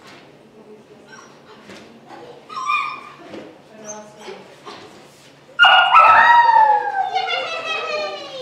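Puppy giving a few faint whines and yips, then, about five and a half seconds in, a sudden loud, drawn-out bark that falls in pitch and trails off over two seconds or so: its bark alert at a person hidden in a box.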